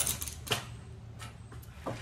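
Metal climbing hardware, carabiners and rings, clicking and clinking as gear is handled in the bag. There is a sharp click at the start and another about half a second in, then a few fainter ones.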